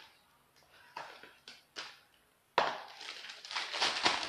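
A plastic piping bag of whipped cream crinkling as it is handled and squeezed. A few short crackles come in the first two seconds, then a longer continuous rustle from about two and a half seconds in.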